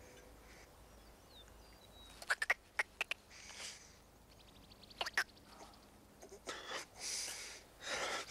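A man gulping a drink in a few sharp swallows, followed by breathy exhales and snorts through the nose.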